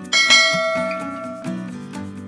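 A bell-chime sound effect struck once, ringing out and fading over about a second and a half, over background music with a steady beat.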